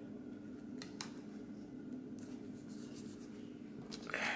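Faint handling of planner stickers and paper: two light taps about a second in, then a soft papery rustle in the second half, over a steady low hum.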